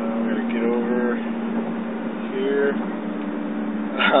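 Steady in-cabin drone of a Toyota Echo driving at highway speed, engine and road noise, with a couple of short voice-like sounds over it.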